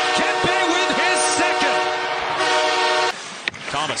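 Arena goal horn sounding as one steady, many-toned blast over a cheering crowd after a home-team goal. It cuts off suddenly about three seconds in.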